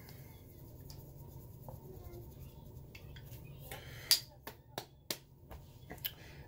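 Quiet room tone, then a handful of short, sharp clicks in the last two seconds.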